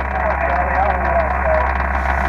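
Icom IC-7000 HF transceiver's speaker playing single-sideband receive audio on 20 metres: steady band hiss confined to a narrow voice range, with faint, overlapping voices of several stations calling at once in a pileup.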